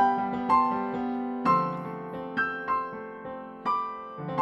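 Yamaha digital keyboard playing a piano sound: the right hand plays doublets, pairs of notes stepping up a white-key scale, syncopated against two-note left-hand shapes of D minor seventh and C major seventh. The left-hand harmony changes about a second and a half in.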